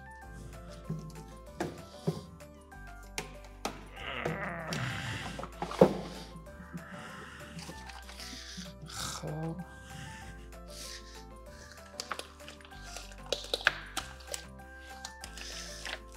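Light background music, with scattered clicks and knocks of frozen, packaged fish being laid into a portable cooler; the loudest knock comes about six seconds in.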